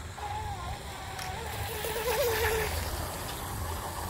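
A 12-inch RC micro hydroplane's 7200 kV Hobbywing brushless motor running out on the pond at a distance: a thin whine that wavers up and down in pitch, over a low rumble of wind on the microphone.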